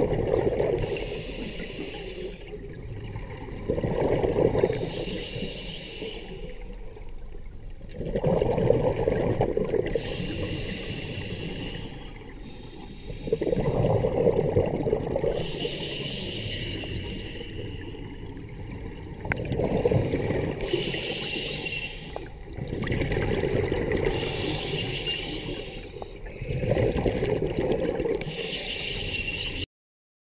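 Scuba diver breathing through a regulator underwater: exhaled bubbles rush and gurgle out in bursts about every four seconds, with the breathing hiss in between. The sound cuts off suddenly near the end.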